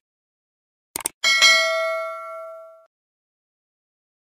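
Two short clicks about a second in, then a bell-like ding that rings out and fades over about a second and a half. It is the notification-bell sound effect of a subscribe-button animation.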